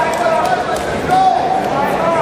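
Crowd noise in a large gym hall: many voices talking and shouting over one another, with several raised voices standing out.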